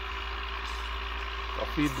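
Tractor engine running steadily, a constant drone with no change in pace. A man's voice starts near the end.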